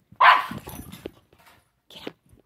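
A dog's single loud bark about a quarter second in, during rough play between two dogs, followed by a few fainter noises.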